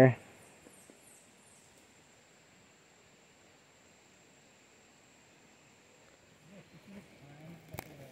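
Quiet outdoor ambience: soft hiss with a thin, steady high-pitched tone, and a few faint high chirps about a second in. Near the end a faint low voice and a single click are heard.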